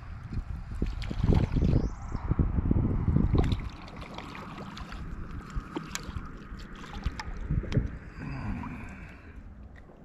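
Water splashing and sloshing beside a kayak as a hooked crappie is reeled to the surface and brought aboard. The heaviest splashing and knocking comes in the first few seconds, followed by lighter water noise and scattered clicks of handling.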